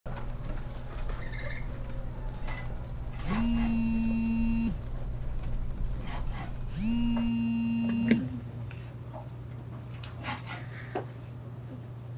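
Outgoing LINE voice call ringing tone: two long, identical steady tones, each about a second and a half, about two seconds apart. A steady low room hum and a few faint clicks sit underneath.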